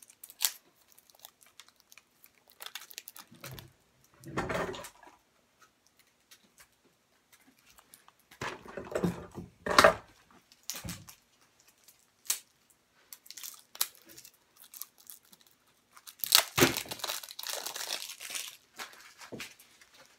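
Thin plastic shrink wrap crinkling and tearing as it is peeled by hand off packs of playing cards, in irregular bursts with short quiet gaps, the longest stretch of handling near the end.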